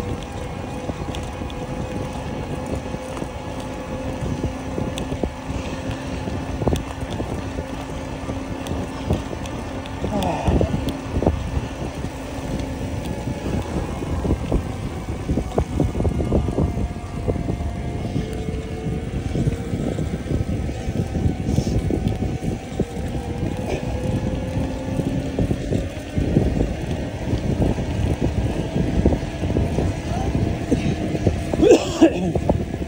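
Wind buffeting a camera microphone on a moving bicycle, with a steady hum from the bike that drifts slightly in pitch.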